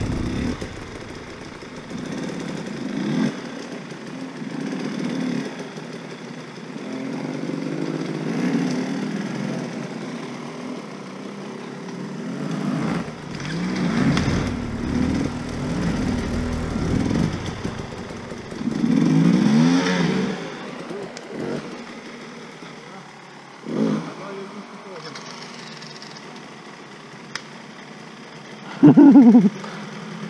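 Enduro motorcycle engines revving in uneven bursts that rise and fall as the bikes are ridden up a steep gully, with voices calling out now and then.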